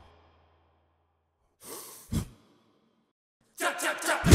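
A single breathy sigh, a person exhaling audibly, about halfway through an otherwise silent stretch. Near the end, a few sharp taps start up.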